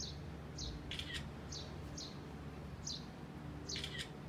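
Barn swallow at its nest under the eaves giving short, high chirps, each dropping slightly in pitch, about two a second, with two louder, longer calls about a second in and near the end.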